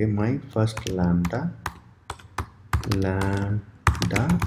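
Computer keyboard keys clicking as text is typed: a scatter of separate keystrokes, most of them in a cluster around the middle, between stretches of speech.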